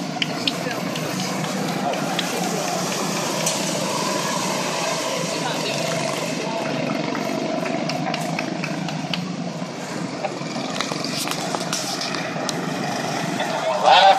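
A pack of quarter midget race cars' small single-cylinder engines running together as they lap the oval, a steady overlapping drone, with indistinct voices in the background.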